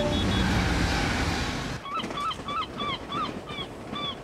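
Sound effects of a passing train: a loud rushing noise that cuts off abruptly about two seconds in. After it comes a quick run of short, honking bird cries, about three or four a second.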